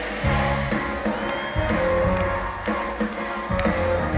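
Live band music in an arena, recorded from among the audience: a deep bass line that moves from note to note under a steady beat of drum hits, with other instruments playing above.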